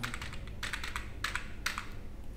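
Light clicks or taps in about four short clusters, over low background noise.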